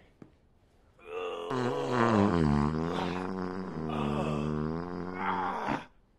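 A long, drawn-out fart, wavering up and down in pitch with a low rumble under it. It starts about a second in and lasts nearly five seconds.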